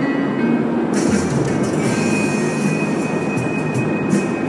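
Steady road and tyre noise inside a moving car's cabin, with music from the car stereo's internet radio playing in the background. From about a second in, a crisp high ticking repeats evenly over the drive.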